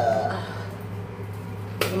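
A foil face-mask sachet being torn open by hand, with a sharp crackle near the end.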